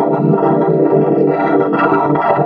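Upbeat children's TV theme song with synthesizer and guitar, run through heavy audio effects. It plays at a steady, loud level with no pause.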